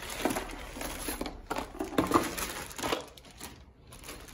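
Clear plastic parts bags crinkling and rustling as they are handled and sorted in a cardboard box, in irregular bursts that are loudest about two seconds in and die down near the end.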